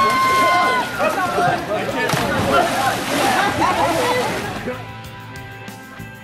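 People splashing about in a freezing cold pool, with water sloshing and several voices yelling and shrieking; there is one long high shriek right at the start. Near the end the splashing and voices give way to guitar music.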